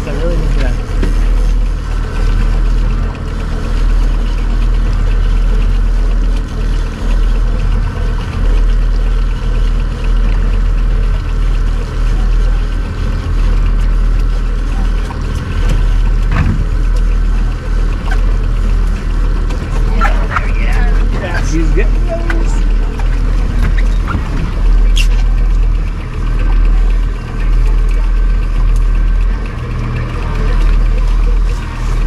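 A boat's outboard motor running steadily, with a constant low drone underneath.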